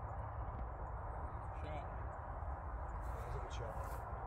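Steady low rumble of wind on the microphone on an open golf course, with no distinct event standing out.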